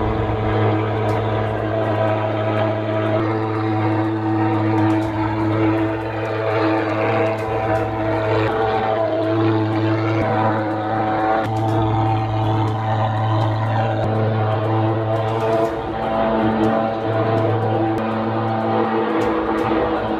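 Pulse-jet thermal fogging machine running, a loud steady buzzing drone while it puffs disinfectant fog, with brief dips a few times.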